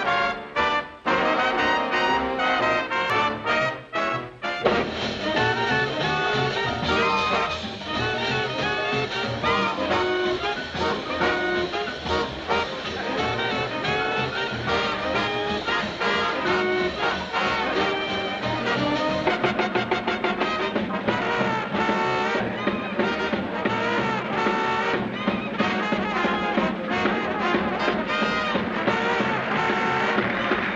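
Big band playing swing music, with trumpets and trombones to the fore. The first few seconds have short punched chords with brief stops between them, then the band plays on without a break.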